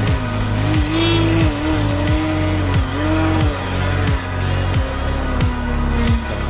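Background music with a steady beat, over the whine of an RC plane's electric motor and propeller that rises and falls in pitch as the throttle is worked through aerobatic manoeuvres.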